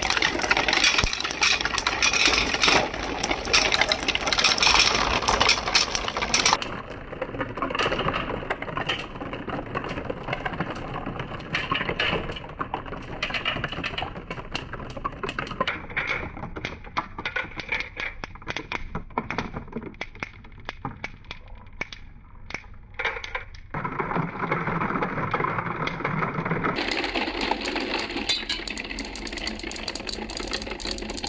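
Small balls rolling and clattering down the spiral tracks and chutes of a corrugated-cardboard marble run: a dense patter of clicks and rattles, loudest in the first few seconds, thinning out past the middle and filling in again near the end.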